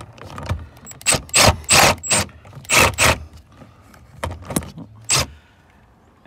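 Cordless driver with a 7 mm socket on an extension, run in about nine short bursts, most in the first three seconds, backing a screw out of a truck door panel.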